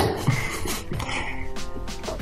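Background music with held, steady tones, playing softly.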